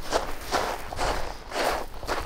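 Footsteps on loose red volcanic cinder, a quick walking or jogging pace of about two steps a second.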